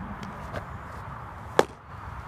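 A baseball fastball smacking into a catcher's leather mitt: a single sharp pop about one and a half seconds in.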